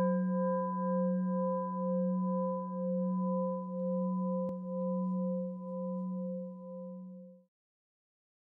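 A struck singing bowl ringing on with a low hum and wavering overtones, slowly dying away and fading out about seven seconds in.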